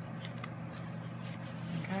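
Faint handling of paper and craft supplies on a worktable: a few small taps and rustles over a steady low hum.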